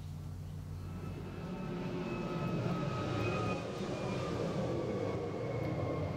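A fixed-wing aircraft flying past, a steady engine drone that swells about two seconds in, with its pitch sliding slowly down.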